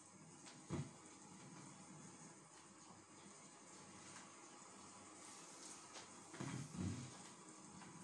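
Near silence: faint room tone with a soft low thump about a second in and a few more thumps near the end.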